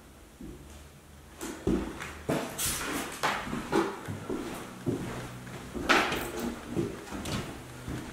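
Footsteps on bare wooden floorboards in an empty room: a run of irregular knocks and scuffs, starting about a second and a half in.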